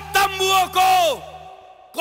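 A man's loud, drawn-out shouted calls, each falling away in pitch at its end, in the manner of a battle cry. Under them runs a low instrumental drone that cuts off about one and a half seconds in.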